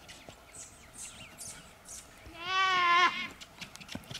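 A single animal call, held for under a second with a wavering pitch, a little past the middle. Faint hoof steps on dirt sound around it.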